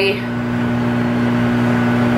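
Microwave oven running while cooking purple sweet potatoes: a steady electrical hum with fan noise.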